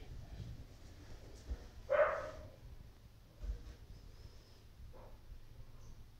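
An animal gives one short, loud call about two seconds in, followed by a fainter, shorter sound about a second and a half later.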